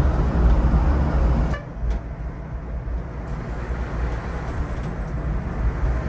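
Volvo 9600 coach moving at highway speed, heard from the driver's cab: a steady low engine and road rumble. About a second and a half in, the higher hiss drops away suddenly and a quieter rumble carries on.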